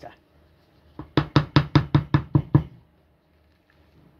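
A kitchen utensil knocking against a mixing bowl: about eight quick, evenly spaced knocks in under two seconds, then quiet.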